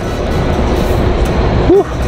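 Loud outdoor city street noise with a steady low rumble of traffic, under faint background music; a man makes a short voiced sound near the end.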